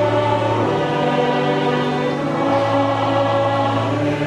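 Large mixed church choir singing a slow anthem in held chords, accompanied by a chamber orchestra, with a low sustained bass note that shifts up and back down.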